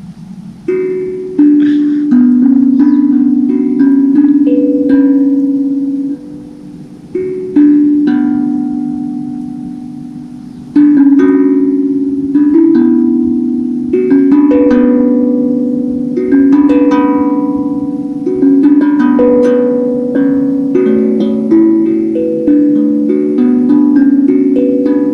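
Handpan (hang drum) played by hand: a run of ringing pitched notes struck one after another, each fading as the next is struck, with a short lull about six seconds in.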